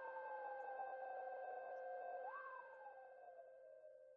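Electronic synthesizer outro sting: held steady tones under a slowly falling gliding pitch that swoops up about two seconds in and sinks again, fading out near the end.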